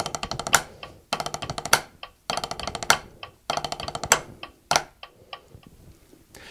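Drumsticks on a rubber practice pad playing nine-stroke rolls at 100 beats per minute: quick double strokes that run through a beat and end on an accented single stroke, one roll about every 1.2 seconds. The playing stops about five seconds in.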